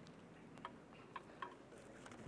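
Near silence: room tone with three faint, short ticks in the second half.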